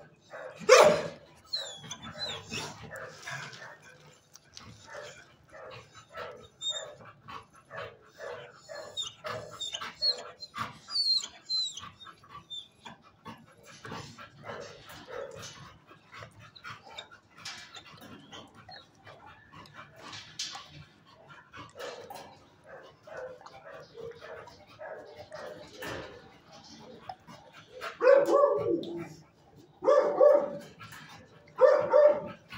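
Dogs in shelter kennels barking and yipping on and off, with the loudest barks about a second in and again near the end.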